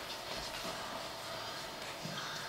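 Faint, steady background noise of a theatre hall, with no distinct event.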